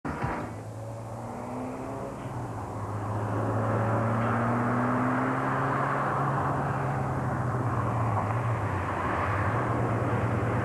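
Distant Ferrari 308 V8 engine as the car approaches, a steady low hum that grows louder about three seconds in and then holds, with a faint tone slowly rising in pitch.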